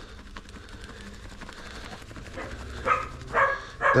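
Plastic bag of dry groundbait powder being handled with a faint rustle, followed by two short pitched calls about three seconds in.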